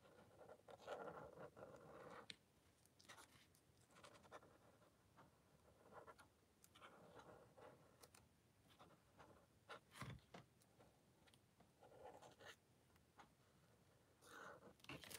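Faint scratching of a marker tip drawn over paper in a few short strokes while outlining letters, with a single sharp knock about ten seconds in.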